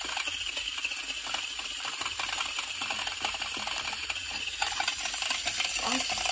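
Hexbug Scarab robot toy running on carpet: a steady, fast buzzing rattle from its vibration motor and legs.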